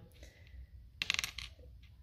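Two small silver bezel settings clinking together in the fingers: a quick run of light, ringing metallic clicks about a second in.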